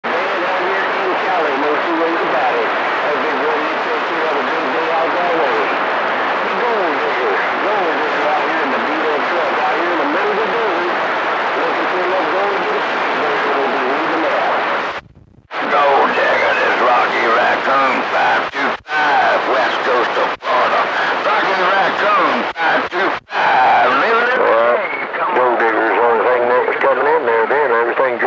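CB radio receiver on channel 28 picking up distant voices through loud static. About halfway through the signal cuts out for a moment. The voices then come through clearer, broken by a few brief gaps as transmissions end and start.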